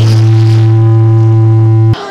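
A loud steady low hum with a few faint higher overtones, heard through the hall's sound system. It cuts off abruptly with a click just before the end.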